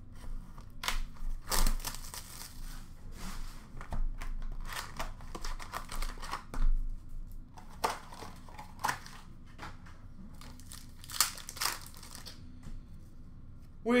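Plastic wrap and foil card packs crinkling and tearing as a sealed box of hockey cards is opened and its packs handled, in irregular crackles and rips that thin out over the last few seconds.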